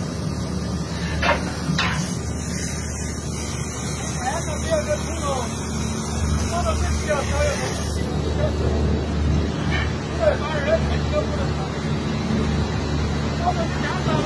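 A steady low drone of heavy diesel machinery, with two sharp knocks in the first two seconds and short distant calls of voices through the middle.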